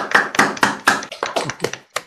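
Hand clapping: a quick, even run of claps, several a second, heard over a video-call connection as a round of applause.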